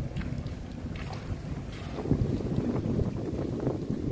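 Wind buffeting a phone microphone held at a car window, over the low rumble of the car driving slowly.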